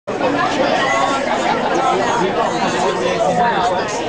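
Many diners talking at once at their tables, a steady babble of overlapping voices.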